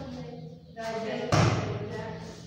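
A single solid thud about a second and a half in: a bare-foot kick landing on a padded makiwara strapped rigidly to a pillar, with no spring to give.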